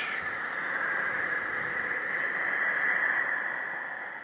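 A long, slow breath, hissing with a steady whistle-like tone, that swells and then slowly fades.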